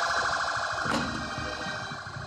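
A loud, warbling, alarm-like electronic tone played as a stage sound effect, fading slowly, with one short click about a second in.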